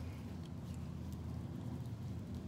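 Steady low background hum, with a few faint soft clicks from hands rubbing oil down a candle.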